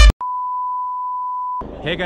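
Steady single-pitch test-tone beep of the kind played with TV colour bars, lasting about a second and a half and cutting off suddenly.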